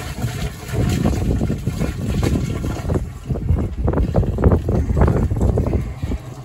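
Liquid sewage pouring from an upturned plastic drum down an Elsan disposal hole, coming out in irregular gulps and stopping near the end as the drum runs empty.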